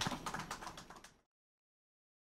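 Audience applause: scattered hand claps, cutting off suddenly just over a second in.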